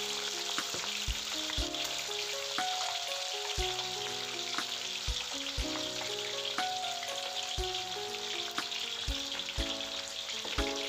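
Hot oil sizzling and bubbling steadily as turmeric-coated Indian mackerel deep-fries in a wok. Background music with a steady beat plays underneath.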